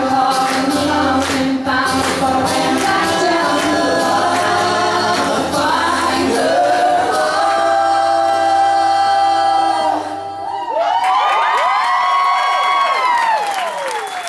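Male and female voices singing in close harmony over a strummed acoustic guitar. About seven seconds in they hold a long chord. Near ten and a half seconds the guitar drops out and the voices carry on alone in sweeping runs that rise and fall in pitch.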